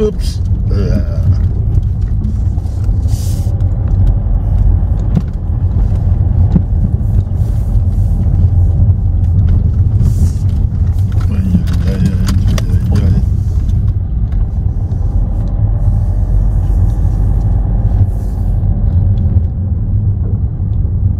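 Car driving slowly on a gravel track, heard from inside the cabin: a steady low rumble of engine and tyres, with scattered small ticks and crackles from the loose surface.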